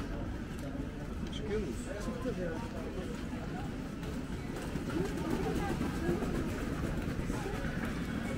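Busy pedestrian street ambience: passers-by talking in snatches over a steady low rumble, a little louder in the second half.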